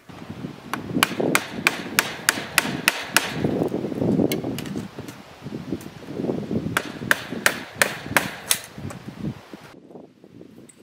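Hand hammer blows on the wooden gate frame of a garden fence as it is being taken down: a quick run of about nine sharp strikes, about three a second, then a pause with rustling and handling noise, then another run of about six strikes.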